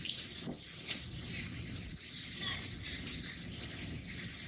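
Steady outdoor background hiss with a few faint, brief sounds, and no clear boom or drone standing out.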